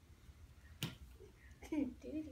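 A single sharp click about a second in, then a short burst of a child's voice near the end.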